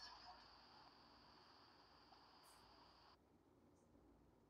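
Near silence: the faint hiss of an open call microphone, which cuts off suddenly about three seconds in as the microphone is muted.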